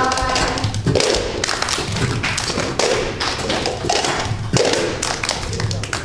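A group of children striking plastic cups on a hard tiled floor in a cup-rhythm routine: a steady run of taps and thumps. Voices singing end about a second in.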